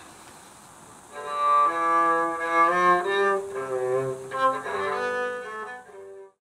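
Bowed string music, cello-like, starting about a second in: a moving melody with several notes sounding together at times.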